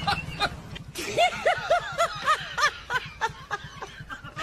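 Someone laughing hard in a quick run of about eight 'ha-ha' pulses, starting about a second in.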